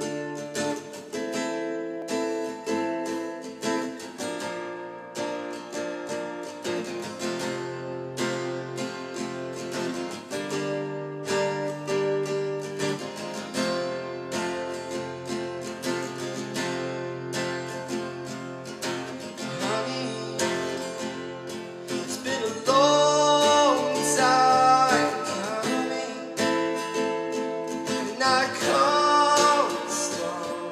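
Steel-string acoustic guitar playing the song's introduction, chords picked in a steady rhythm. About 23 seconds in, and again near the end, a man's voice comes in over the guitar with a few held sung notes.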